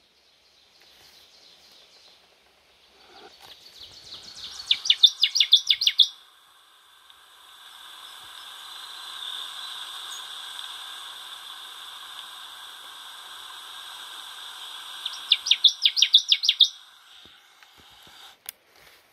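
Recorded Connecticut Warbler song played back through a small handheld speaker for a survey: a loud, rapid series of repeated chirpy phrases that builds in volume, heard twice. Between the two songs a steady high hiss runs for several seconds.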